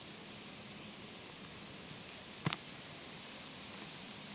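Faint rustling of soil and leaf litter as a hand twists a firmly rooted birch bolete mushroom out of the ground, with a single short click about two and a half seconds in.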